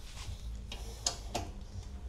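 A few light metallic clicks, about three spaced a third of a second apart, of a T-handle 10 mm socket wrench working a bolt of a motorcycle's steel luggage rack to loosen it.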